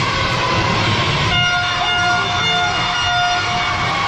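A horn blown in several short toots of the same steady pitch, starting about a second and a half in, over the continuous noise of a cheering crowd echoing in a large indoor pool hall.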